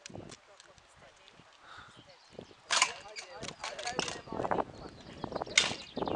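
A woman's voice calling, mixed with several sharp clap-like sounds, starting about halfway in after a quiet first few seconds.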